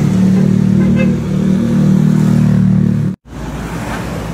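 A vehicle engine running steadily close by, a loud low hum that cuts off abruptly a little over three seconds in.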